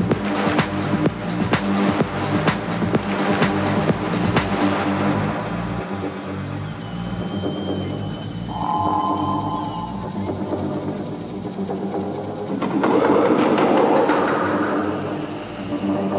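Electronic dance music from a live DJ set: a driving beat with regular ticking hi-hats stops about four seconds in, leaving a breakdown of held synth chords with a couple of brief high synth notes. A swelling wash of noise builds near the end.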